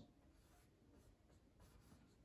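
Very faint strokes of a marker pen on a whiteboard.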